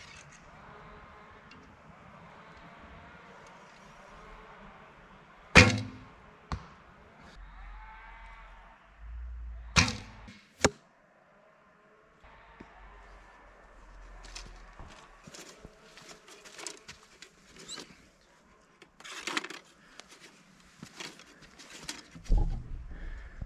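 Recurve bow shot: a sharp snap of the released string about five and a half seconds in, the loudest sound, followed by more sharp knocks around ten seconds in. In the second half, scattered light clicks and rustling.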